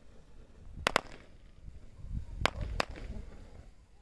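Firework going off with four sharp cracking pops: a quick double crack about a second in, then two more cracks a third of a second apart about two and a half seconds in.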